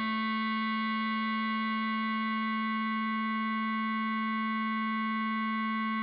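Bass clarinet holding one long, steady note, a whole note tied to a half note.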